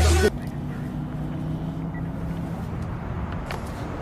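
Film soundtrack: loud music cuts off suddenly just after the start, leaving a low steady background hum with a faint click near the end.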